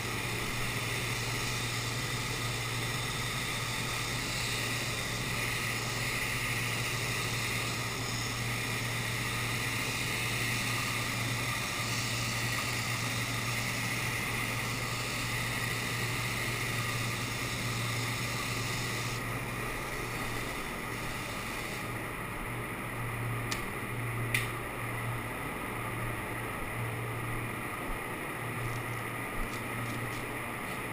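Air spray gun hissing steadily as it atomizes paint onto a car's body panel; the hiss stops about two-thirds of the way through as the spraying ends. A steady low hum runs underneath, and a few sharp clicks come near the end.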